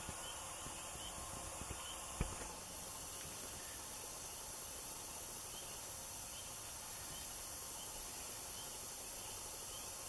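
A steady faint hiss, with a single light click about two seconds in.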